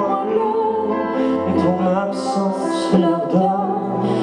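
A man and a woman singing together live, accompanied by two pianos, with long held notes that waver.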